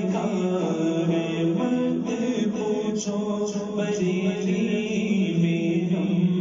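Devotional vocal music: a single voice chanting in long, drawn-out notes that slide slowly from pitch to pitch.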